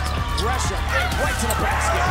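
Basketball game audio under a music track with a steady bass: many short sneaker squeaks on the hardwood court, with ball bounces and crowd noise.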